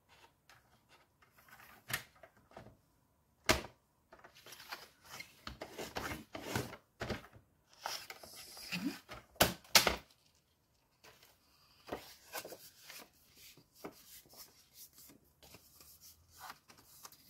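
Cardstock being scored on a paper trimmer's scoring blade and then folded: paper sliding and scraping on the trimmer with a few sharp clicks of the trimmer's plastic parts, the loudest about three and a half seconds in and two close together near ten seconds, then paper rustling as the card is creased.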